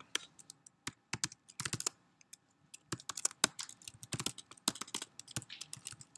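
Typing on a computer keyboard: quick runs of key clicks, with a short pause about two seconds in.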